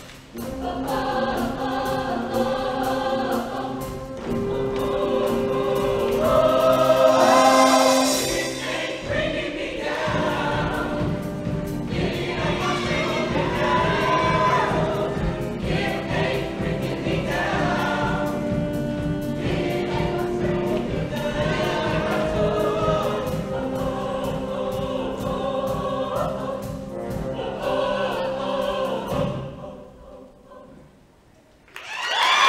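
Show choir singing in full voice with live band accompaniment. A steady beat comes in about nine seconds in, and the song ends sharply just before the close.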